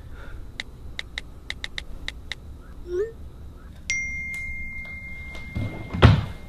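A quick run of about eight light clicks with a slight metallic ring, then a steady, high, beep-like tone that comes in about four seconds in and holds to the end. A dull thump falls right at the end.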